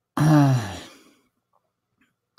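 A man's voiced sigh, falling in pitch and fading out within about a second.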